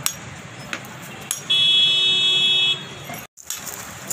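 A vehicle horn from busy street traffic sounds one steady, high-pitched honk lasting a little over a second, over the general noise of the street, with a few sharp clicks before it.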